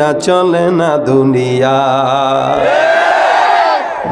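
A man singing an unaccompanied Bengali gazal into a PA microphone, holding long notes, with a long wavering, gliding note near the end.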